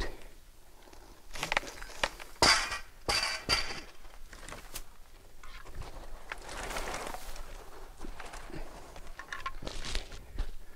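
Footsteps in dry leaf litter and branches brushing and snapping as someone pushes through the limbs of a felled tree. A few sharp cracks in the first four seconds, then softer rustling.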